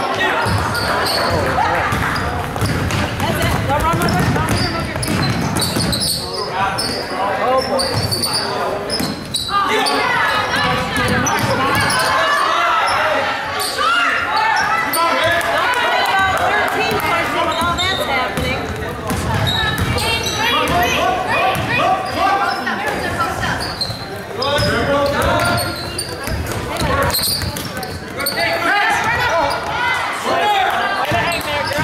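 Live basketball game in a gym: a basketball bouncing on the hardwood floor amid the shouting voices of players and spectators.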